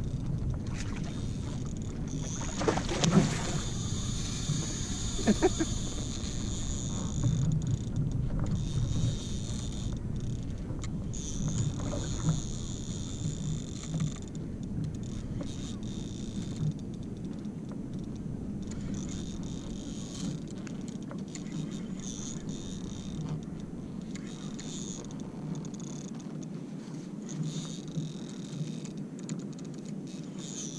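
Steady water and wind noise around a kayak, with a brief laugh about six seconds in.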